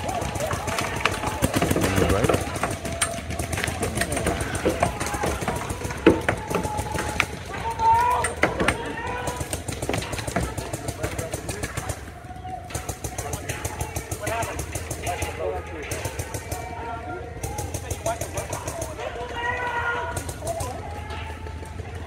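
Paintball markers firing in fast strings, a dense rattle of shots, with players' voices shouting over it.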